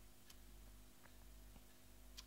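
Near silence: room tone with a faint steady hum and a few faint ticks about a second apart.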